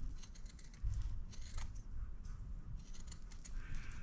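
Fabric scissors snipping through quilted layers of fabric and batting, trimming the excess around a curved edge in a run of short, irregular cuts.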